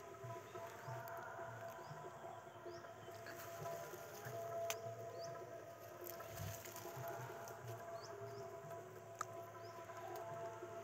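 Faint outdoor background with a small high-pitched chirp repeating every half second to a second, and two sharp clicks near the middle and near the end.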